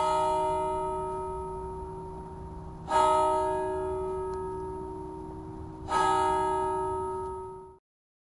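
A church bell tolling three times, about three seconds apart, each stroke ringing on and slowly fading; the sound is cut off just before the end.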